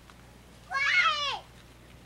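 A small child's single high-pitched squeal, rising then falling in pitch, lasting under a second about two-thirds of a second in.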